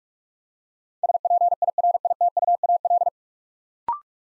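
Morse code at 45 words per minute: a single steady tone keyed in quick dots and dashes for about two seconds, sending the whole word 'spiritual'. Near the end comes a brief two-note rising beep, the courtesy tone that marks the word complete.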